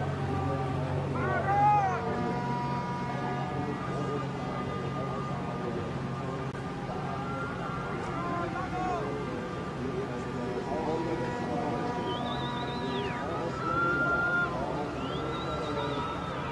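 Indistinct voices over a steady background hum, with two high calls that rise and fall late on.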